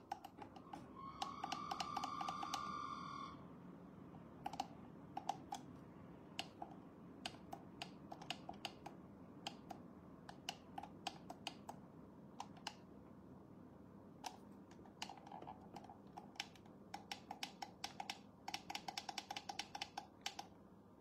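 Typing: irregular light key clicks, faint, in short runs that come faster near the end. Near the start a high steady tone sounds for about two seconds, louder than the clicks.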